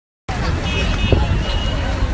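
Street hubbub: children's voices chattering over traffic noise and a steady low rumble, starting abruptly a moment in.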